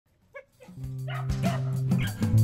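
A dog barking as background music starts, the music carrying a held low note with light beats.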